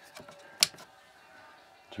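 A single sharp click about half a second in, preceded by a few faint ticks, from a hand working the plug and outlet of a power inverter.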